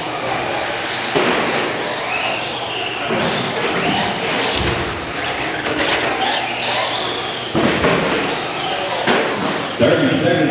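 Several Traxxas Slash electric RC short-course trucks racing, their motors and gears whining and gliding up and down in pitch as they speed up and slow down. A few sharp knocks are heard, the loudest near the end.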